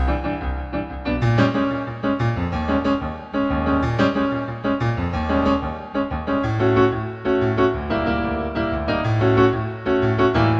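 Background music led by piano or keyboard over a steady bass line, with notes struck in an even rhythm.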